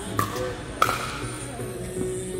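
Two sharp pops of a pickleball struck by paddles, about half a second apart, the second louder, over background music.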